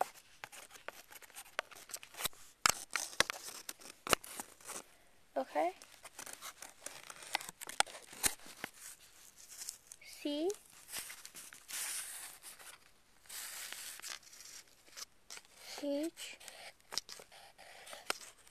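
Scratching and rustling of drawing or writing on paper, with many sharp clicks and taps and a few longer scratchy strokes. A child's voice gives three short hums.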